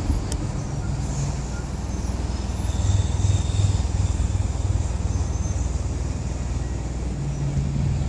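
Steady low rumble of city traffic, swelling and easing slightly, with a single sharp click about a third of a second in.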